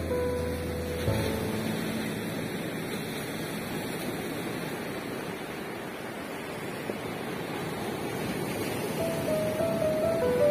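Small waves washing up onto a sandy beach, a steady wash of surf. Background music fades out about a second in and comes back near the end.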